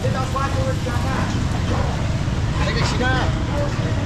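Street-market hubbub: people's voices talking in bursts, with no one voice standing out, over a steady low rumble of traffic.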